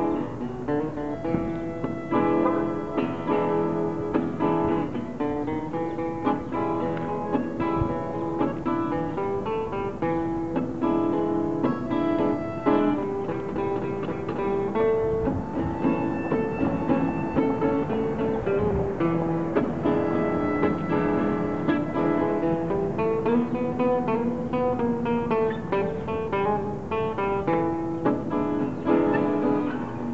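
Acoustic guitar strummed in a steady rhythm with a harmonica playing over it, holding long notes and bending some of them.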